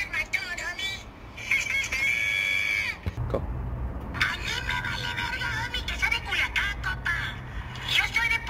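A very high-pitched voice talking, in the style of a cartoon puppet's voice, over music, with a steady low hum coming in about three seconds in.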